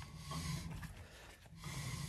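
Rear disc brake of a street stock race car turned slowly by hand, the pads rubbing faintly on the rotor with a low vibrating sound. The owner doesn't know its cause and wonders whether the pads are chattering.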